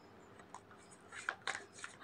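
Quiet pause with a few faint soft clicks and rustles in the second half.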